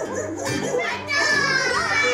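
Young children's voices calling out and chattering together over background music, with one long high voice gliding slowly downward in the second half.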